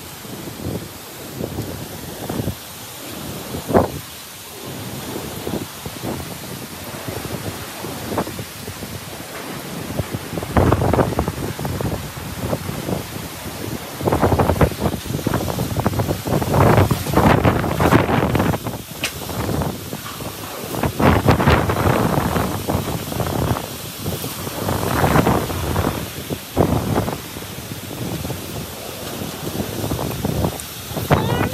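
Typhoon-force wind gusting hard, buffeting the phone's microphone. The gusts build about ten seconds in and come in repeated strong surges.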